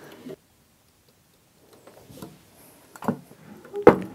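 A second of dead silence, then faint handling sounds and two sharp knocks, the louder one just before the end, as a tabletop block-printing press with a metal frame is opened.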